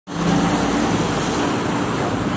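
Steady road traffic noise: a continuous wash of vehicles with a low engine hum held through it.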